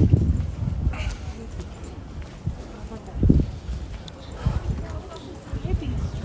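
Walking along a busy sidewalk: irregular low thumps of footsteps and rumble on the handheld microphone, the strongest about halfway through, with voices of people nearby.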